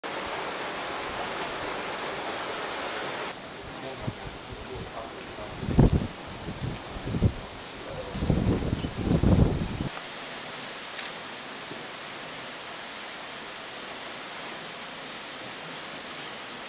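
Outdoor ambience: a steady hiss like light rain for about three seconds, then a quieter hiss broken between about four and ten seconds by several loud, low rumbling bursts on the microphone.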